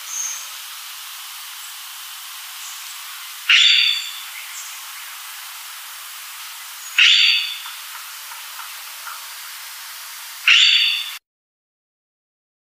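Palawan peacock-pheasant calling: three short, loud calls about three and a half seconds apart over a steady hiss. The sound cuts off shortly before the end.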